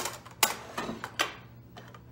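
Several light metallic clicks and clinks from stainless steel stackable steamer pots and their handled holder being handled, about five in the first second and a half, the sharpest about half a second in.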